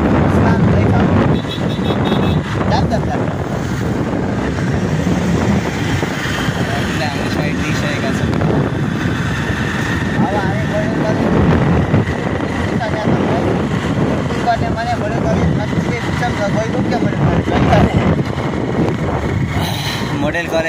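Wind rushing over the microphone of a moving motorcycle, with the engine and road noise running steadily underneath.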